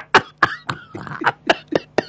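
Two men laughing hard into studio microphones, breathless: a string of short, sharp gasps and wheezing bursts close together, with some cough-like catches.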